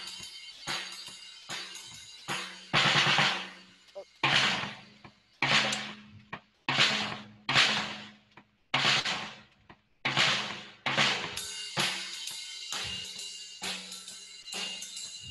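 Drum kit played by hand: a run of loud cymbal crashes, each struck together with a drum and ringing out, about one every second and a half through the middle, with lighter, quicker drum and cymbal strokes before and after.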